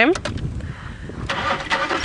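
Safari game-drive vehicle's engine starting about a second and a half in, then running.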